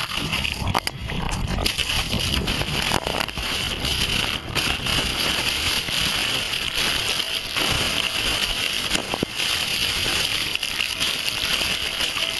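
Underwater churning of a wave wipeout: a dense, steady rumble and hiss of turbulent water with scattered crackles and clicks of bubbles.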